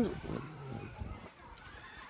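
A pause in a man's talk: the tail of his spoken "and" right at the start, then only faint outdoor background sound.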